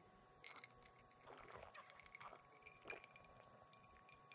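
Near silence: room tone with a faint steady high tone and a few faint scattered ticks.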